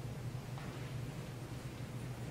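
Quiet room tone: a steady low hum with faint background noise and no distinct events.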